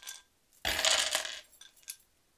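A handful of small wooden letter tiles tossed onto a wooden tabletop, clattering together for about a second, then a single click of one tile near the end.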